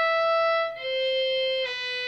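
Violin playing slow, long bowed notes one after another, each held for nearly a second and stepping down in pitch, in Carnatic style.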